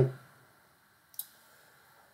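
A man's voice trails off, then near silence broken once by a single short, sharp click about a second in.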